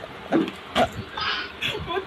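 A few short bursts of stifled, breathy laughter from a person, about half a second apart.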